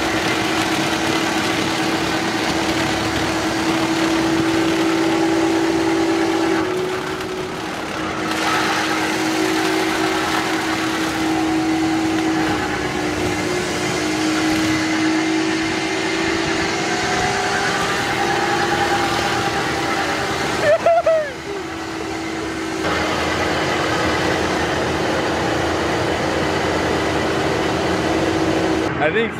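Kubota SVL95-2s compact track loader running a hydraulic brush cutter that is mowing and shredding standing corn stalks: a steady engine note with a whine over the chopping noise. The sound dips briefly about seven seconds in and again a little past twenty seconds.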